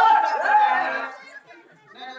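A loud, high-pitched voice for about a second at the start, then quieter voices.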